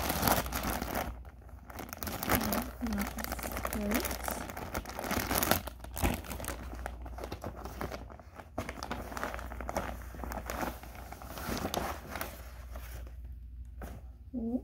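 Thin clear plastic packaging bags crinkling and rustling as they are handled: a costume piece is pushed back into one bag, then a second bag is opened. The crinkling is dense and crackly and dies down shortly before the end.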